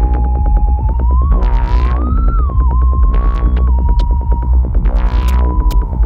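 Techno music: a heavy, steady bass drone under a synthesizer lead tone that bends upward in pitch about a second in, peaks, then falls back and levels off, with fast even ticking and swells of hiss every couple of seconds.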